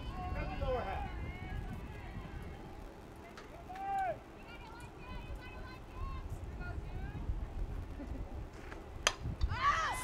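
Open-air ballfield ambience with a steady low rumble and faint distant voices; about nine seconds in, a single sharp crack of a bat hitting a softball, which goes foul.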